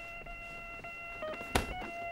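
Electronic doorbell chime playing a simple stepped melody of steady electronic notes. A sharp click, the door's lock or latch, comes about a second and a half in.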